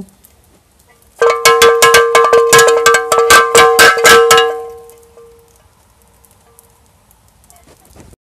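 Old rusty cowbell shaken by hand, its clapper clanking rapidly, about six strikes a second, for about three seconds starting a second in. It rings with one strong low note over several higher ones, and the ring dies away over about a second after the shaking stops.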